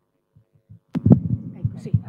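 A sharp click about a second in, then a run of loud low thumps and rumbling with a faint steady hum: microphone handling noise, a live mic being picked up and moved.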